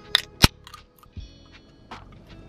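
Pull tab of an aluminium energy-drink can being opened: a sharp click, then a louder crack about half a second in as the seal breaks. Background music plays throughout.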